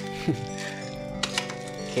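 Soft background music with steady held tones, with a few faint crackles about a second in as brown packing tape and wrapping are pulled open by hand.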